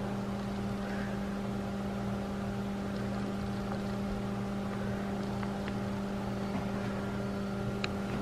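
Steady motor whir of a small battery-powered desk fan, one unchanging hum, with a few faint ticks in the later seconds.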